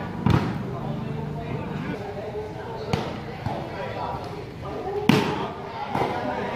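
Volleyball being struck by players' hands during a rally: sharp slaps, loud ones about a third of a second in and about five seconds in, lighter ones around three seconds. Spectators chatter throughout.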